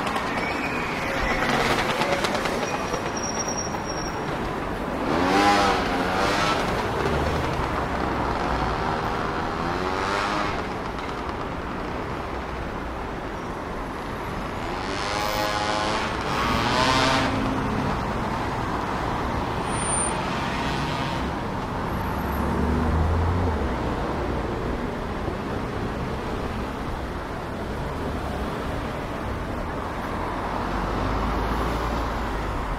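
City street traffic: cars and other motor vehicles driving past over a cobbled road, their tyres and engines making a continuous rumble. Louder vehicles pass about five seconds in and again around fifteen to seventeen seconds.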